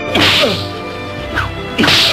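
Whip lashes on a man's back: two loud sharp cracks, one just after the start and one near the end, over a film soundtrack's music.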